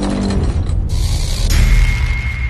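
Mechanical sound effects from an animated intro sting, a dense clattering, working-machinery texture, with a steady high tone coming in about one and a half seconds in.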